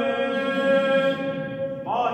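An Armenian priest chanting a liturgical prayer as a solo voice. He holds one long steady note, then slides up into a new phrase near the end.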